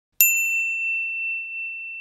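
Notification-bell ding sound effect: a single bright ding, struck once about a quarter second in, that rings on and slowly fades.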